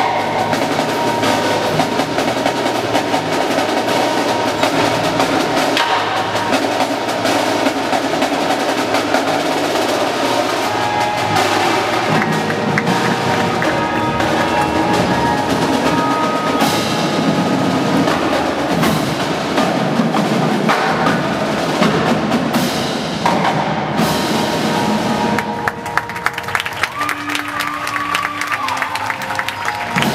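Indoor drumline playing: marching drums in fast, dense rhythmic patterns and rolls with keyboard percussion from the front ensemble. Near the end the drumming thins and sustained ringing, bell-like tones come through.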